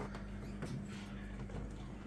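Steady low hum of running aquarium equipment, with faint bubbling from an air stone.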